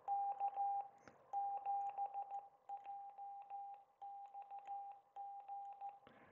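Morse code sidetone from an FX-4CR QRP transceiver in CW practice mode: a single steady beep switching on and off in short and long elements as a Morse key is worked, the radio acting only as a keyer and not transmitting. Faint clicks accompany the beeps.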